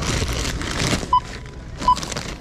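Self-checkout barcode scanner giving two short beeps, a little under a second apart, as items are scanned. A rustle of handled packaging comes just before them.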